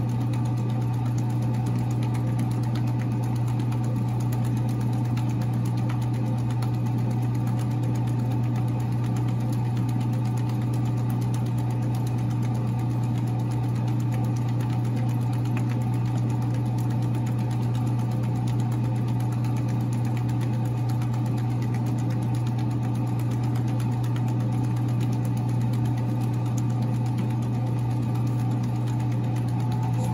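Large commercial floor-standing planetary mixer running steadily, its paddle creaming cream cheese and sugar in a stainless steel bowl: a constant, even motor hum.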